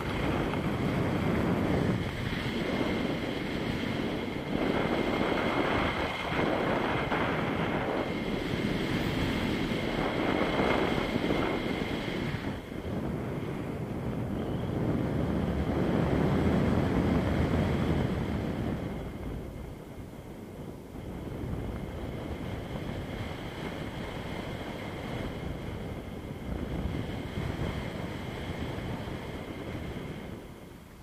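Wind rushing over the action camera's microphone as a tandem paraglider flies, a steady rush of noise that is louder for about the first eighteen seconds and then eases off.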